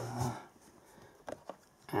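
A man's drawn-out hesitation sound trailing off about a third of a second in, then a quiet room with a couple of faint clicks just past the middle.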